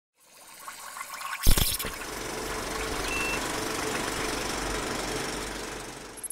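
Cinematic title sound design: a swell building into a sudden hit about a second and a half in, then a sustained rumbling wash that fades away near the end.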